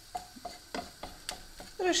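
Wooden spatula stirring and scraping fried rice around a nonstick frying pan: a string of soft, irregular taps and short scrapes of wood on the pan.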